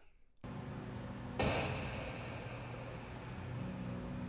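Steady low drone of a car being driven, heard from inside the cabin, starting suddenly after a brief silence, with a short rush of noise about a second and a half in.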